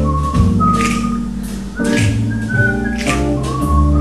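A melody whistled into a microphone over a slow live band accompaniment of sustained bass and keyboard chords. The whistled line moves between a few held notes, with a few soft percussion touches.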